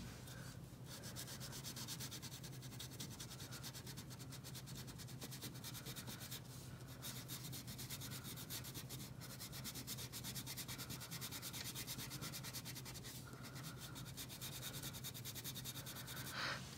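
Wax crayon rubbed over paper in quick back-and-forth strokes as an area is colored in, faint and steady.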